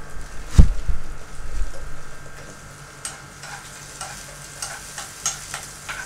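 Sliced onions frying in oil in a pan, with a metal spoon stirring and scraping against the pan in short strokes; a heavy thump about half a second in is the loudest sound.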